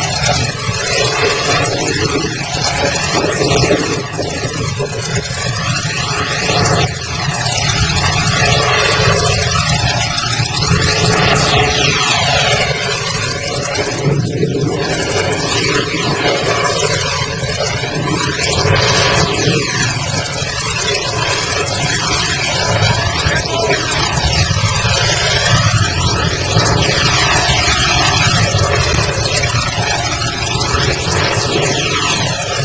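Steady, loud engine noise from heavy machinery, with a slow swirling, phasing sweep running through it.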